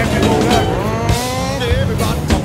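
Enduro dirt bike engines running, with one revving up and climbing in pitch for about a second through the middle.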